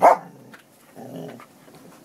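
Border Collie giving a sudden loud bark, then a short low growl about a second later: a warning over the bone it is guarding.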